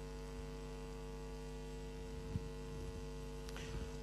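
Steady low electrical mains hum, with one faint tap a little over two seconds in.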